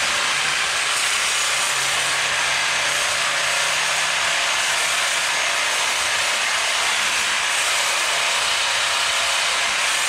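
Handheld plasma cutter cutting steel brackets off a rear axle housing: a loud, steady hiss of the arc and air jet without a break. A faint low hum underneath fades about four seconds in.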